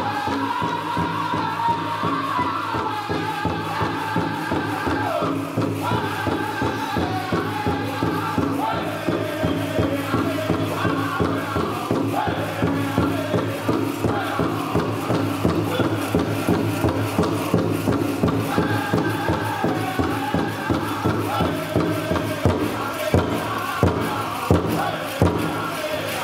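Powwow drum group singing a jingle dress dance song in high voices over a steady beat on a large drum, with a few louder single beats near the end.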